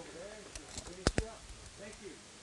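Two sharp clicks in quick succession a little after a second in, over faint background talk.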